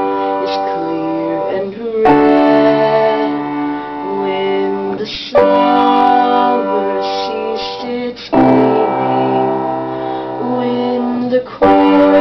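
Upright piano playing a slow passage of sustained chords, with a new chord struck about every three seconds.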